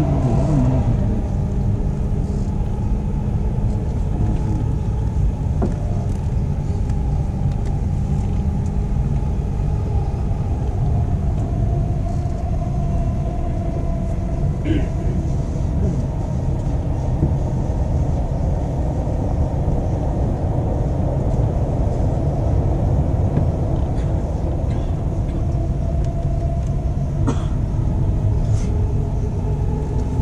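Dubai Metro train cabin while the train runs along the elevated track: a steady rumble of wheels and running gear with a faint hum, and a few light clicks near the end.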